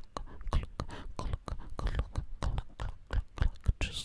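Gloved fingers scratching and rubbing close against the microphone, a quick, irregular run of crackling scratches several times a second.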